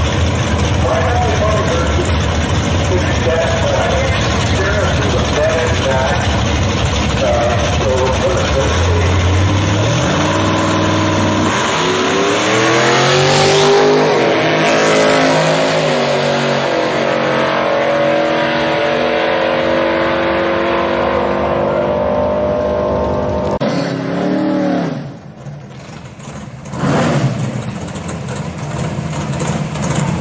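Drag-racing cars idling at the starting line, then launching at full throttle about ten seconds in, the engine pitch climbing in steps through the gear changes as they run down the strip. An abrupt change a few seconds from the end brings another engine revving.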